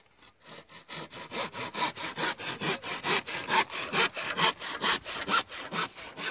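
Hand saw cutting wood in quick, even back-and-forth strokes, about four a second. It starts faintly and reaches full level about a second in.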